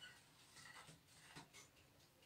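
Faint, scratchy rustling of a hand rubbing flour into a butter-and-oil mix in a wide earthenware bowl, with a few soft scrapes standing out.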